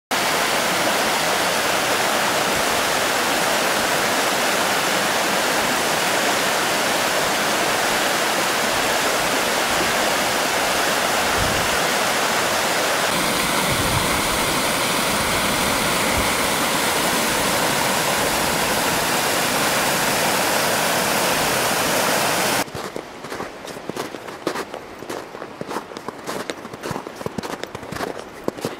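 Steady rush of a mountain stream cascading over rocks. About three-quarters of the way through it cuts off suddenly to a much quieter stretch of irregular crunching footsteps on snow.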